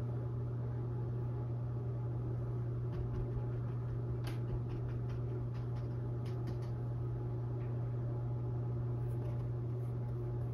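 Steady low hum, with a few faint soft taps of a dry mop brush dabbing paint onto a stretched canvas.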